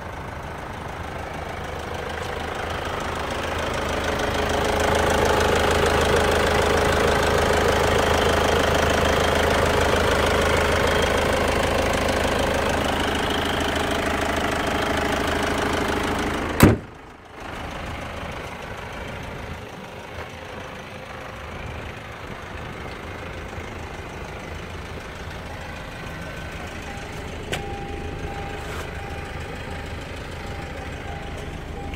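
A 2007 Hyundai Santa Fe CM's diesel engine idling with a steady clatter, louder as the engine bay is approached. About halfway through comes one loud bang, after which the engine sounds much quieter and muffled.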